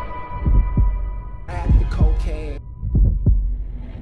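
Heartbeat sound effect: three pairs of low double thumps about a second apart, over a steady low drone, with a short snatch of voice in the middle.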